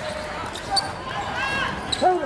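Basketball bouncing on a hardwood gym court in short scattered knocks, with a brief high-pitched sound about one and a half seconds in.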